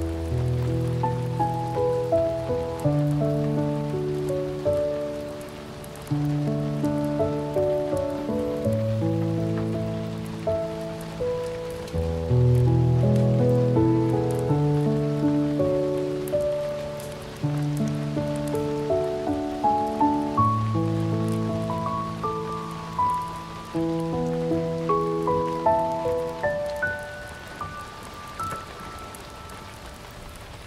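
Slow, gentle piano music: held low notes under a melody that climbs higher and grows softer near the end, with a faint rain-like patter underneath.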